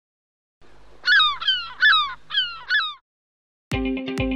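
A bird calling about six times in quick succession, each call bending in pitch. Near the end, guitar music with a steady beat starts.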